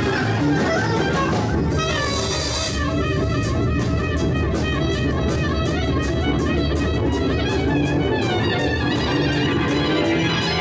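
Live jazz-rock band playing an instrumental passage: guitar, keyboard, bass and drum kit together, with a steady cymbal beat coming in about three seconds in.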